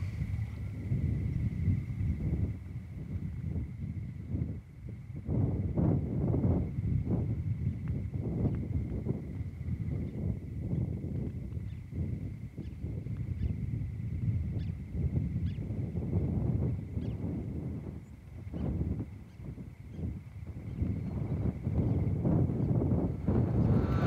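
Outdoor ambience: irregular low rumbles with scattered soft knocks, over a faint steady high-pitched tone that holds throughout.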